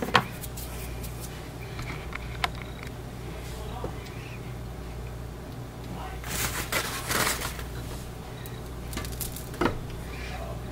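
Hands pushing a soap loaf along a wooden soap cutter. There are a few light knocks and a short spell of scraping and rubbing about six to seven and a half seconds in, all over a steady low hum.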